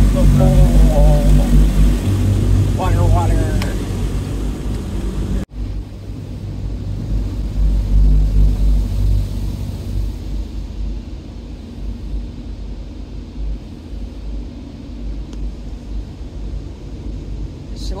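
Automatic car wash machinery heard from inside the car's cabin: a loud steady low rumble with a hissing wash over the car. About five and a half seconds in it drops out abruptly for an instant, then carries on quieter and duller.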